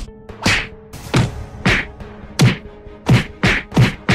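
Fight sound effects of punches and hits: a series of sharp whacks, each with a deep thud, about eight of them, coming faster near the end, over a low music drone.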